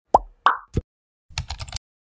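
Animated-intro sound effects: three quick cartoon pops, the first dropping in pitch, in the first second, then a short run of rapid keyboard-typing clicks as text fills a search bar.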